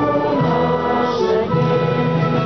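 Orchestral music with a choir singing, in long held chords.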